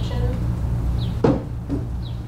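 A single short knock about a second in, over a steady low hum.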